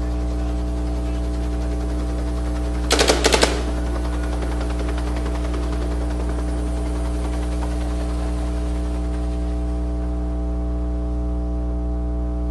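A rapid burst of about five gunshots in roughly half a second, about three seconds in, over a loud, steady electrical mains hum.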